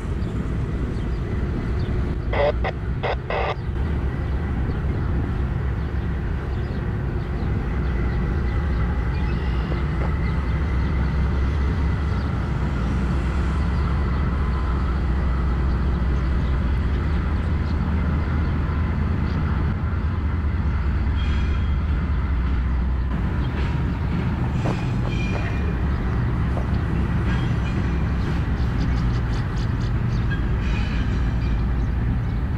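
Diesel locomotives running light, their engines making a steady low rumble as they roll across the bridge. There are a few sharp clicks a couple of seconds in, and quicker clicking of wheels over the rail joints near the end.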